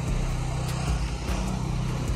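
An engine running steadily at a constant speed, a low even drone.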